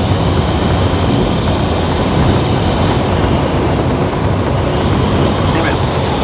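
Steady engine and road noise inside the cab of a moving truck, a dense rumble with no distinct events.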